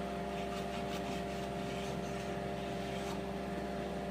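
Steady electric-motor hum of a shop machine running at a constant speed, with a few faint brief ticks over it.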